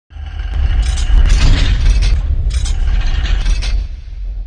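Logo-intro sound effect: a loud, deep rumble with two clusters of mechanical-sounding clicks and hiss over it. The second cluster ends just before the end, leaving the rumble.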